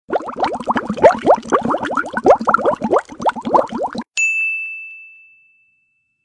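Sound effect: about four seconds of rapid, short rising chirps, then a single bright bell-like ding that rings out and fades over about a second.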